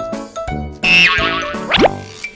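Bouncy children's background music with cartoon sound effects laid over it: a loud wavering effect about a second in, then a quick rising swoop near the end.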